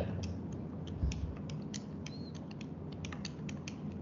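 Calculator keys pressed one after another, a quick irregular series of small clicks, as a short sum is keyed in.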